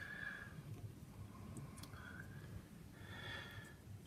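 Quiet pause filled with a few soft breaths close to the microphone and a couple of faint light clicks from handling.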